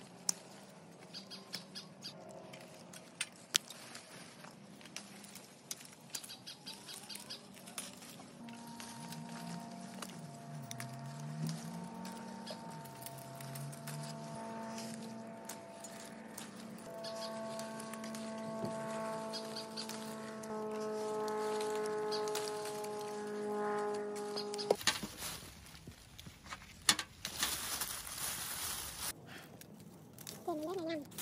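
Scattered sharp clicks and rustling of persimmon branches as fruit is clipped with pruning shears. From about eight seconds in, soft background music of long held notes plays until about twenty-five seconds in. Then it cuts off suddenly to rustling and snapping in the branches over a steady hiss.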